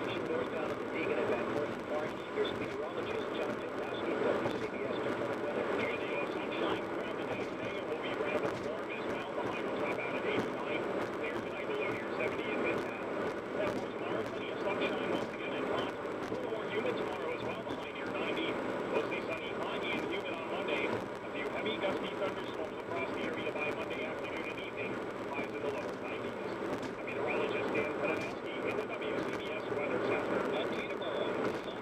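AM news-radio broadcast audio with a sharp upper cut-off, carrying a steady, indistinct hash of sound with no clear words.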